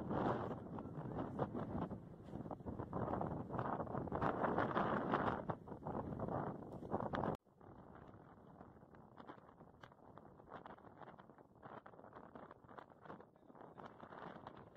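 Wind buffeting the microphone in loud, uneven gusts; about seven seconds in it drops suddenly to a much quieter, steady wind hiss.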